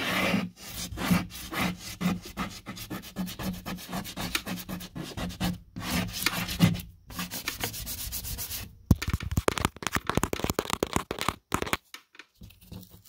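Fingers rubbing and scratching a crumb of gypsum across the paper face of a sheetrock panel, in repeated strokes about two or three a second. About three-quarters of the way in, the strokes turn into quick, sharp scratches.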